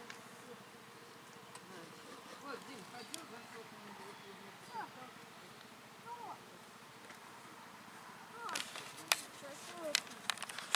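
Faint outdoor background with scattered short sounds that rise and fall in pitch, and a few sharp clicks near the end.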